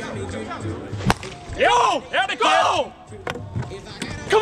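A plastic wiffleball bat hits the ball once, a single sharp crack about a second in, followed by players shouting.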